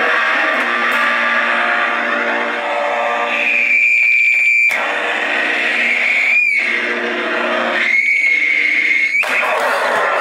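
Heavily distorted electric guitar noise with a high, steady feedback whine that comes in three times, each cut off abruptly, apparently from a small amp held over the guitar's pickups to make a feedback loop.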